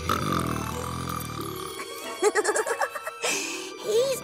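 A cartoon sun character snoring: one long, low, rumbly snore lasting nearly two seconds, over soft background music. Short, bending vocal sounds follow in the second half.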